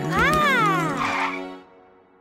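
Cartoon background music with a short, high cartoon voice sound that rises and then falls in pitch. The music stops about a second and a half in.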